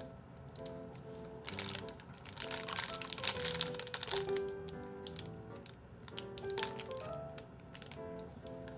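Soft background music with a steady melody, over which a plastic-wrapped cookie is crinkled and crunched while being eaten, mostly between about a second and a half and four seconds in, with a few more crinkles near the end.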